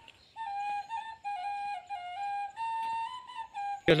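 Background music: a flute playing a slow melody of held notes that step up and down.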